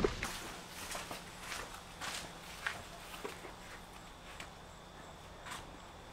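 Faint footsteps on an asphalt driveway, a soft step roughly every half second to second.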